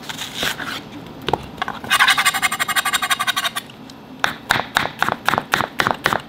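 Chef's knife cutting a peeled onion on a plastic cutting board. About two seconds in there is a dense, rapid run of rasping cuts, and from about four seconds in the blade slices through and taps the board in an even rhythm of about four strokes a second.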